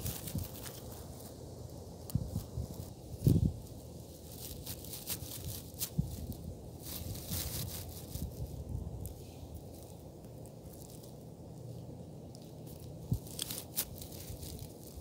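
Short grass rustling and crackling as plastic Schleich toy horses are walked through it by hand, with scattered clicks and one louder bump about three seconds in.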